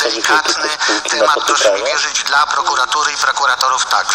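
Speech only: a man talking continuously, as heard from a radio broadcast.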